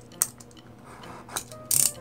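Snap-off utility knife at a box's plastic wrap: a few sharp clicks, then a short high rasp near the end as the blade cuts the film.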